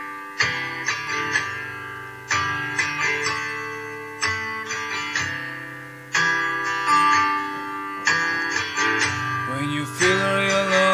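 Guitar playing a song's opening, chords and single notes picked in a repeating pattern, each ringing out and fading before the next.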